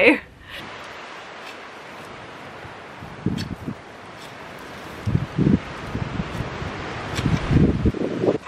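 A long-handled garden tool scraping and knocking into soil, breaking up a compacted surface to make a seedbed. The scraping comes in three short spells, about three seconds in, around five seconds and near the end, over a steady hiss of wind.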